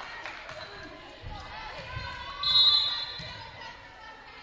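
A referee's whistle blown once, a short shrill blast about two and a half seconds in, over spectators' voices echoing in a gymnasium.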